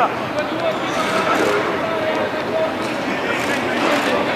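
Distant, indistinct voices of footballers and coaching staff calling out across an outdoor training pitch, over a steady background hiss of open-air ambience.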